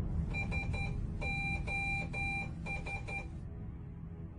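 Electronic alarm beeping: a high, steady tone pulsed in three quick groups of beeps, the middle group longer, stopping about three and a half seconds in.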